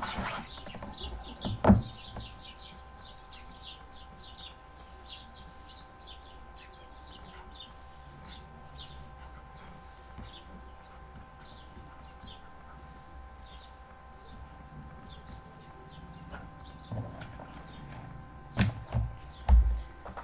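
A small bird chirping over and over in quick, short, high notes for the first dozen seconds or so, over a faint steady electrical whine. A couple of sharp knocks come right at the start and a few dull low thumps near the end.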